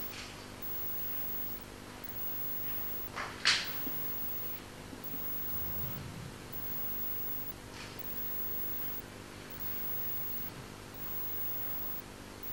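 Quiet room tone of a council chamber with people standing still: steady low hum and hiss. A short sharp sound stands out about three and a half seconds in, with a couple of fainter small sounds later.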